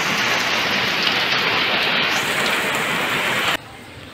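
Heavy rain falling steadily onto a flooded rooftop, splashing into the standing water. It cuts off abruptly near the end.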